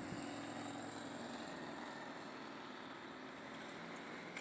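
Faint street traffic: a motorcycle passing across the junction, its engine fading over the first second or two, leaving a low steady hum of traffic.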